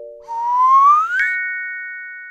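Cartoon sound effects on an animated logo: a whistle sliding upward in pitch for about a second, then a sharp click and a ringing chime that fades slowly.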